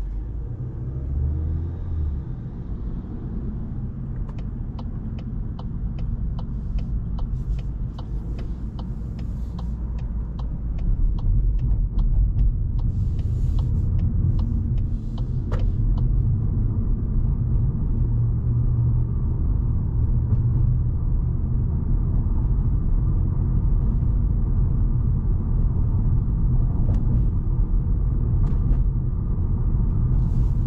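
Cabin sound of a Volkswagen Golf 8 with a 1.5 TSI four-cylinder petrol engine driving in city traffic: a low road and engine rumble that grows louder about a third of the way in as the car speeds up. A regular ticking, about two a second, runs through the first half and then stops.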